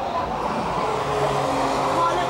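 Car engine running at steady revs as a car drives through a circuit corner, its note held at one pitch over a wash of road and engine noise.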